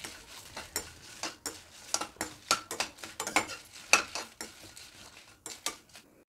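A metal spoon scraping and clinking against a metal kadai as dried red chillies and curry leaves are stirred and roasted, in quick, irregular strokes, about three a second.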